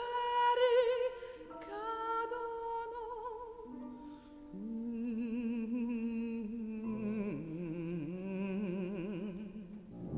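Slow contemporary classical music: long sustained notes with wide vibrato, stepping downward in pitch. A lower line enters about halfway through and another, deeper still, comes in near the end.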